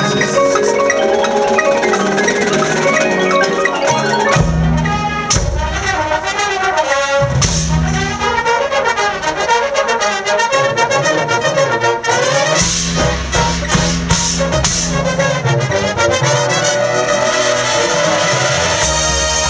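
Drum and bugle corps brass line (trumpets, mellophones, baritones and contrabass bugles) playing a loud passage together with the front ensemble's marimbas and mallet percussion. Heavy low notes come in about four seconds in and again from about twelve seconds in.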